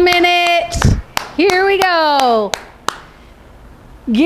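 A voice cheering with two long drawn-out calls, the first held at one pitch, the second falling, over a run of sharp hand claps. A dull thump comes between the calls.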